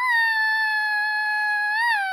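A young boy's voice holding one long, high wordless note that sinks slightly in pitch, with a brief lift near the end.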